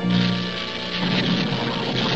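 Cartoon sound effect of a laser drill running: a steady low electric hum with a hiss over it.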